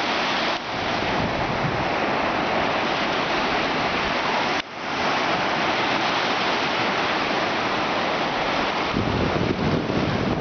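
Ocean surf breaking and washing up a sandy beach, a steady rushing hiss with a brief drop in level a little under halfway. Wind buffeting the microphone adds a low rumble near the end.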